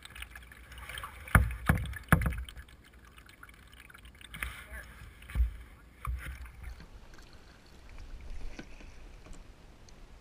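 Kayak paddling: a double-bladed paddle dipping and splashing through the water beside a plastic kayak, with a run of sharp knocks about a second in and a few more around the middle, then quieter strokes.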